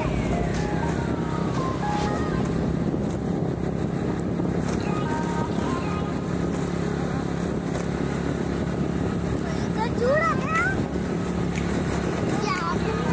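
Steady engine and road noise of a vehicle driving along a paved road, with a low hum throughout. A whistle falls in pitch over the first two seconds, and a few short chirps come about ten seconds in.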